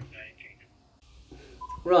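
A short single electronic beep, the key tone of an Icom amateur radio transceiver, about three-quarters of the way in. Otherwise the sound is quiet, with a brief dead-silent gap near the middle.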